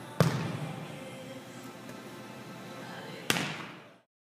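Two sharp smacks of a volleyball being struck hard in a blocking and attacking drill, about three seconds apart, each echoing briefly in a large indoor hall. The sound fades out near the end.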